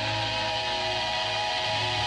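Hardcore band's electric guitar holding one sustained, ringing chord over a steady low bass note.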